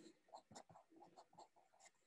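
Near silence, with a few very faint short ticks.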